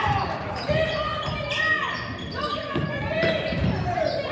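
A basketball being dribbled on a hardwood gym floor, a series of low bounces, under the voices of players and spectators in the hall.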